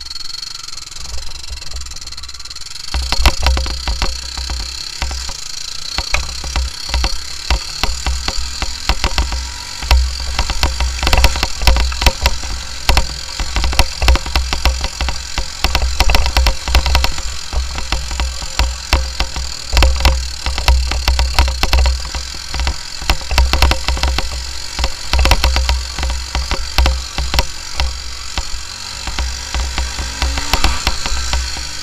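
Honda TRX300EX quad's single-cylinder four-stroke engine running under way over a bumpy dirt trail, louder from about three seconds in. Heavy wind buffets the mounted camera's microphone, and frequent knocks and rattles come from the machine jolting over ruts.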